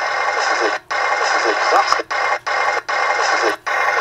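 A voice played back through a small speaker, thin and tinny, with the sound cutting out abruptly five times for a split second.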